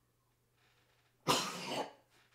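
Near silence, then a man coughs once, short and sharp, about a second and a quarter in.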